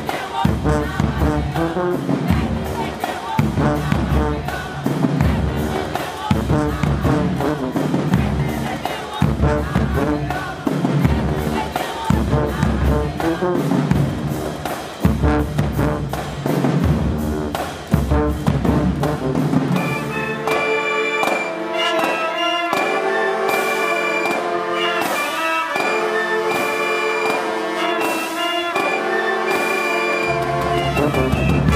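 High school marching band music. For the first two-thirds, a steady bass drum beat runs under the band. About twenty seconds in, the drums drop out and the woodwinds and brass play held chords.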